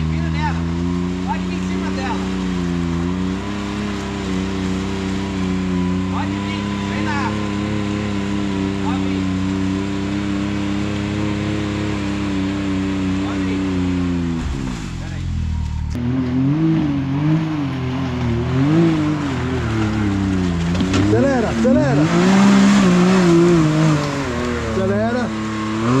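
Can-Am Maverick X3 UTV's three-cylinder engine running at a steady speed under load as it pulls through deep mud, then, after a brief dip, revving up and down again and again.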